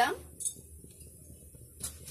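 A glass pot lid with a steel rim lifted off a pan of cooked rice. There is a brief clink about half a second in and a soft knock near the end.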